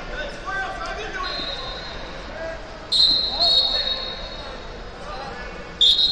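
Referee whistle blasts ringing through a large gymnasium: a faint one about a second in, two loud blasts in quick succession about three seconds in, and another loud one at the very end, over background chatter.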